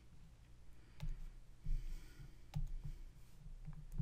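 Faint computer mouse clicks, three of them about a second and a half apart, with soft low bumps in between, as the screen recorder's controls are worked to stop the recording.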